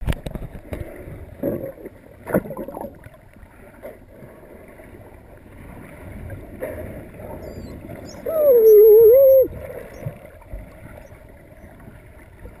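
Muffled underwater noise through a camera housing, with a few knocks early on. A little past the middle comes a loud, wavering whistle-like call lasting just over a second, with faint high chirps around it.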